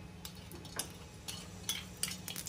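Faint, irregular clicks of a metal spoon against a steel bowl as solid ghee is scooped and scraped into a pan.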